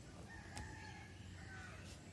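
A faint, drawn-out animal call in the background, about a second and a half long, its pitch bending slightly.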